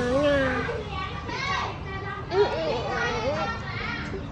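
A young girl's voice talking in short, high-pitched phrases while she eats.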